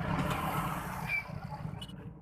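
Steady low rumble of roadside traffic with a noisy hiss over it.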